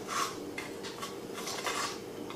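Biting into a frozen mango and Greek yogurt ice lolly and chewing it: a few short, crisp crunching sounds of the icy lolly in the mouth.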